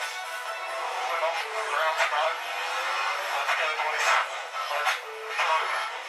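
Formula 1 team radio playing back: a driver's voice over the car radio, thin with no bass, with music underneath.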